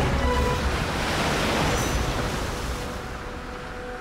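Cartoon soundtrack: background music under a rushing water sound effect that swells about a second in and fades away.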